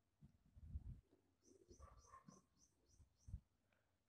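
Near silence: room tone with a few faint soft taps and a faint run of high ticks in the middle, about four a second.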